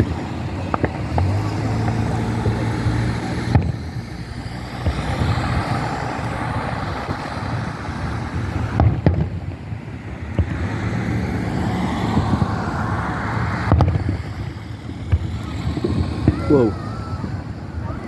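Aerial fireworks going off in sharp bangs every few seconds, over the steady running of a car engine and people talking.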